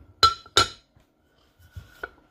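Scentsy warmer's wax dish being set down on top of the ceramic warmer body: two sharp clinks about a third of a second apart, each with a short ring.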